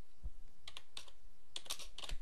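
Typing on a computer keyboard: a few separate keystrokes, then a quick run of them near the end.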